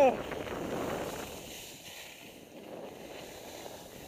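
Skis sliding over snow with wind rushing across a headcam's microphone: a steady noise, louder in the first second or so, then easing off.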